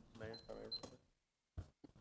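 Faint voice away from the microphone, then near silence broken by a few short, soft clicks about a second and a half in.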